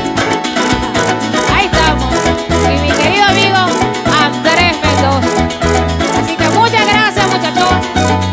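Venezuelan llanera (joropo) band playing an instrumental passage: plucked harp over a steady maraca rhythm and a stepping bass line.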